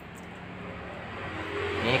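Steady low hum of a running refrigerator compressor, with an even hiss that grows slowly louder toward the end.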